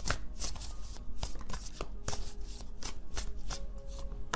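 Tarot cards being shuffled by hand: a quick, irregular run of short flicks and clicks.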